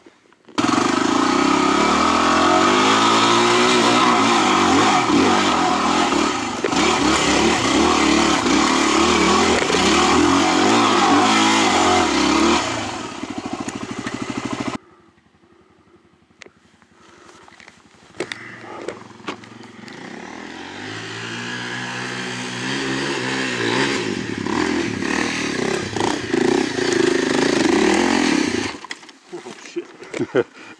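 A 250 cc single-cylinder dual-sport motorcycle engine revving unevenly under load on rough trail, its pitch rising and falling with the throttle. About halfway through it cuts off suddenly, leaving a few seconds of faint clicks. Then engine sound builds back up and holds until it stops shortly before the end.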